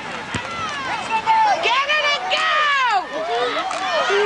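Football spectators shouting and cheering, many voices overlapping with no clear words. A single sharp click about a third of a second in.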